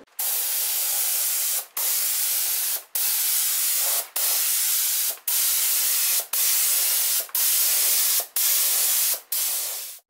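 Gravity-feed paint spray gun spraying red base coat: a steady air-and-paint hiss in about nine passes of roughly a second each, cut briefly between passes as the trigger is released.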